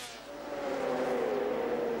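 Engines of a pack of MotoGP racing motorcycles: a steady engine note that grows louder over the first half second and then eases slightly down in pitch as the bikes slow through a corner.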